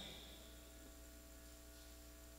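Near silence: a steady low electrical hum under the room tone, with the echo of the last spoken word dying away in the first half second.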